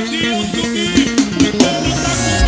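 Live forró band playing an instrumental passage: a steady drum-kit beat under melodic instruments.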